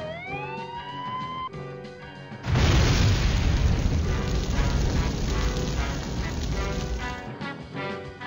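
A siren wail that glides down and back up, then cuts off about a second and a half in. About two and a half seconds in, a loud explosion sound effect hits and goes on for about five seconds before fading. Music plays underneath throughout.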